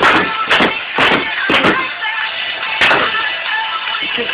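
Electronic music playing in the background, with about five sharp whacks in the first three seconds as a plastic water bottle is struck and kicked.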